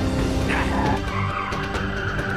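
Cartoon car-chase sound effects: a car engine and a tyre squeal that slides down in pitch about half a second in, over action music.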